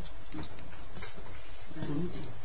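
Indistinct voices and room noise, with a voice starting to speak near the end.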